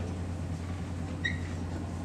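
Room tone during a pause in a lecture: a steady low electrical hum, with one brief faint high squeak a little past a second in.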